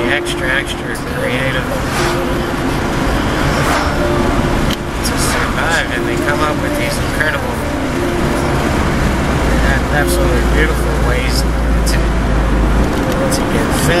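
A man talking inside a moving car, over the steady rumble of road and engine noise in the cabin; the low rumble grows louder for a few seconds past the middle.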